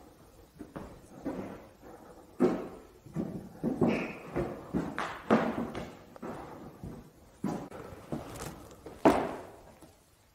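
Irregular knocks and thuds with a short echo, as in a large empty room, coming every half second to second. The loudest are about two and a half seconds in, around five seconds in and about nine seconds in.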